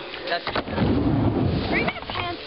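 Skateboard wheels rolling on a wooden mini ramp, a rumbling noise with a few knocks about half a second in.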